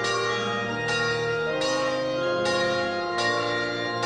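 Church bells ringing, several bells sounding together in a dense, steady peal with a fresh strike about every second.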